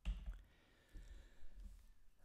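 A few faint clicks over quiet room tone.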